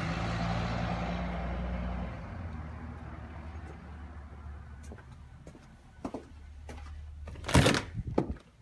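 A vehicle passing on the street, its low engine hum and tyre noise fading away over the first few seconds. Then a few light clicks and a loud knock near the end as the front door is opened.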